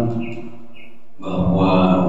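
A man chanting Quranic Arabic through a microphone in a drawn-out, melodic recitation style. A phrase ends just after the start, and after a short pause a long held note begins about a second in.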